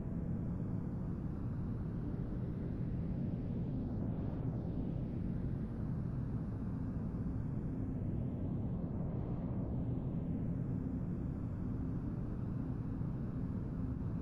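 Deep, steady ambient drone of meditation music, a dense low hum with a faint hiss above it that slowly swirls every few seconds.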